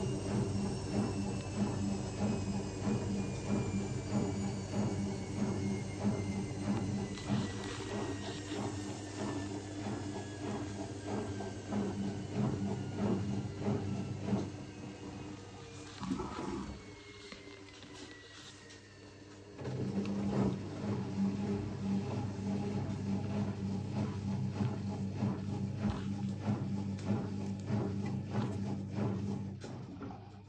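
Zanussi ZWT71401WA washing machine spinning two wet towels, the motor's whine slowly falling in pitch as the drum winds down. Past the middle it goes quieter for about three seconds, then the motor hum picks up again.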